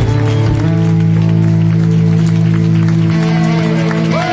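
A live rock band playing amplified electric guitar: long held chords, then a note sliding down in pitch near the end.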